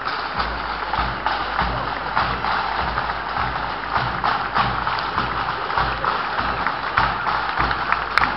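Marching pipe band playing: bagpipes over snare and bass drums beating a steady march rhythm.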